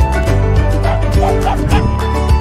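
A corgi barking in short, high yaps, several in quick succession from about a second in, over continuous upbeat background music.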